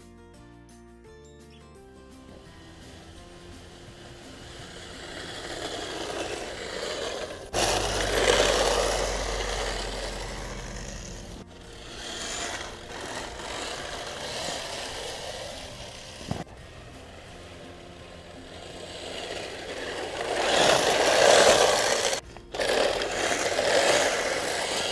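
Brushless electric RC snowmobiles running through snow, tracks scraping and churning, growing louder and fading as they pass close by several times. The sound breaks off suddenly a few times. Music plays briefly at the start.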